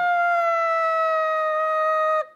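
Brass horn call, likely a played sound effect: a few short notes end on one long held note that sags slightly in pitch.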